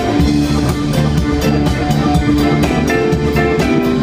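Live blues band playing, with a drum kit keeping a steady beat under electric guitar and keyboard.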